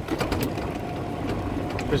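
Steady low rumble of a moving vehicle, with scattered small clicks and a faint steady whine over the second half.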